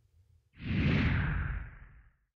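Whoosh transition sound effect, starting suddenly about half a second in and fading out over about a second and a half, sinking slightly in pitch as it dies away.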